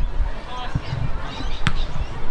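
A football being kicked: a sharp thump a little past halfway, with a softer knock before it, over a low steady rumble and faint calls from players.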